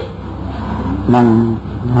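A man's voice giving a Buddhist sermon in Khmer: a pause of about a second, then a short spoken phrase. A steady low hum runs underneath.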